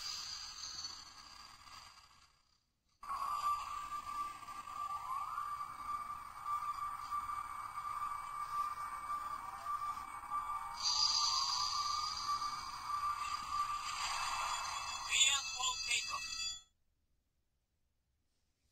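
Light-and-sound Sevenger figure playing show audio through its small built-in speaker. A short clip fades out, then after a brief gap a longer clip of voice and sound effects with a steady tone plays and cuts off suddenly about 16 seconds in.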